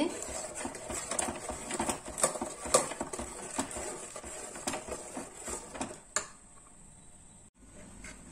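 A spoon stirring thick mango pulp in a metal pot, scraping and knocking against the pot's sides and bottom at an uneven pace. The stirring stops about six seconds in, leaving only a faint hiss.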